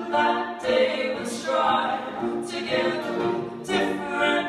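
Live acoustic folk song: several voices singing together in harmony on held, wordless notes, over acoustic guitars.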